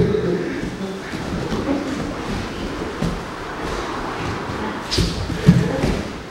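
Grapplers in gis rolling on a padded mat: cloth and bodies shuffling and scraping against the mat, with two heavy thumps about half a second apart near the end, the second the loudest.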